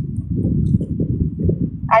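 A loud, muffled, irregular low rumble with no clear voice in it, typical of a phone's microphone being handled or rubbed while the phone is moved.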